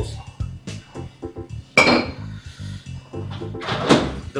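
Background music with a steady beat, over the knocks of a muddler crushing orange pieces against the bottom of a tall glass. A loud, ringing glassy clink comes about two seconds in, and another sharp knock near the end.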